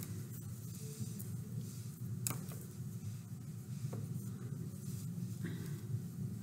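Faint rustling and a few soft ticks of hands wrapping thread around feather quills, over a steady low room hum.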